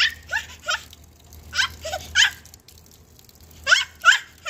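Repeated high animal calls, each sliding sharply down in pitch, coming in groups of three about every two seconds, over the faint trickle of a running outdoor tap.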